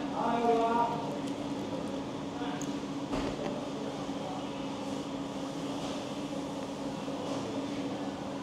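Steady low mechanical hum of indoor room tone, like ventilation or air conditioning. A voice murmurs briefly in the first second, and there is a single faint click about three seconds in.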